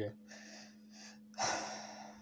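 A man breathing between sentences: soft breaths, then a sharp intake of breath about a second and a half in.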